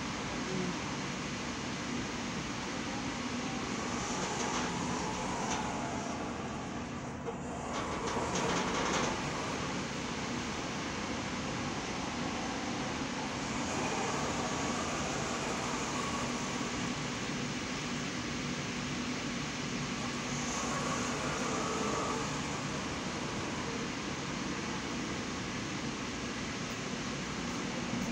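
Steady background noise of urban surroundings, a constant hiss with a low steady hum, swelling briefly about eight seconds in.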